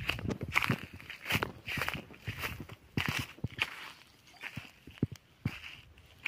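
Footsteps on dry grass and packed soil: an irregular run of short steps, thinning out after about four seconds.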